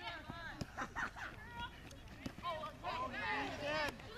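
Several high-pitched voices shouting and calling across a soccer field, overlapping and growing louder in the second half, with a few sharp knocks among them.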